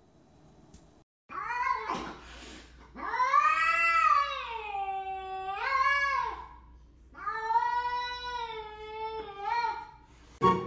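Cat caterwauling at another cat: two long, drawn-out yowls, the first rising and falling in pitch over about three seconds, the second steadier and wavering at its end. There is a single knock before the first yowl.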